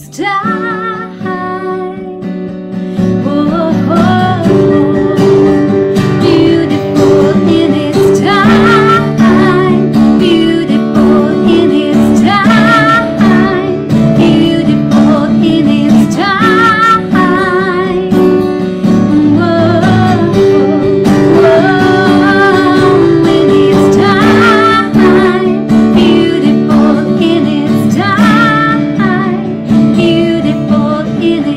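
A woman singing solo, accompanying herself on a strummed acoustic guitar, her sustained notes wavering with vibrato. The playing builds in loudness over the first few seconds.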